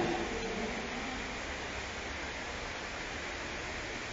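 Steady, even background hiss with no speech: recording noise or room tone.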